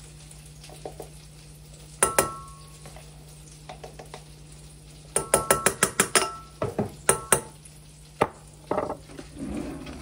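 A metal utensil clinking against a saucepan: one sharp ringing clink about two seconds in, a quick run of taps and clinks around five to six seconds, and two more near seven seconds.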